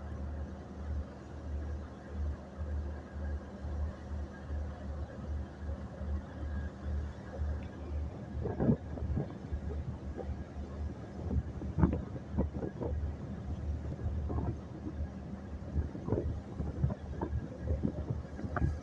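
A boat's engine running with a steady low drone, with wind buffeting the microphone. Irregular thumps come in from about eight seconds in.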